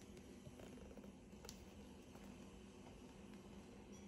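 Near silence: a steady low room hum with a few faint clicks.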